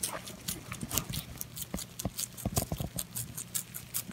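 Rabbit chewing crisp vegetable stalks close to the microphone: quick, crisp crunching clicks, about four or five a second, with a denser, lower rustling burst a little past the middle.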